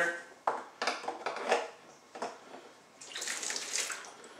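A few clicks and knocks as a ceramic mug, a plastic funnel and a plastic soda bottle are handled at a sink, then about a second of hissing water near the end.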